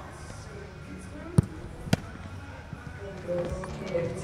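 Two sharp thuds of a football being struck, about half a second apart, over a low murmur of voices.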